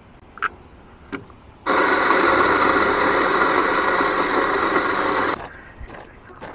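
Built-in burr grinder of a Gemilai espresso machine grinding coffee beans into a handheld portafilter. Two light clicks come first, then the motor runs steadily for almost four seconds and cuts off suddenly.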